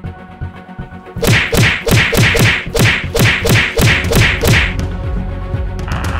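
Intro music with a quick run of hard, punchy hits, about four a second, each dropping in pitch. The hits start about a second in and stop shortly before the end, giving way to steadier music.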